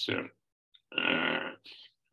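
A man's short throaty hesitation sound, about a second in, between phrases of his speech.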